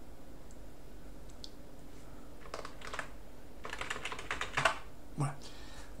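Computer keyboard keystrokes entering a password at a sudo prompt. A quiet start is followed, about halfway through, by two quick runs of key clicks.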